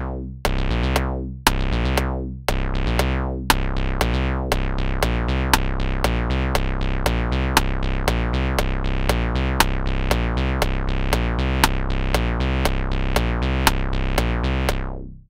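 Acid-style synthesizer bass line from a glide bass patch, played in a loop by a step sequencer, with a click track ticking about twice a second. The pattern gets busier after about four seconds as more steps sound.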